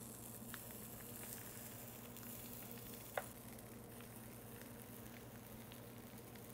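Faint sizzling of pancake batter as it is piped onto the preheated nonstick plates of an electric corn dog maker, over a low steady hum, with a small click about three seconds in.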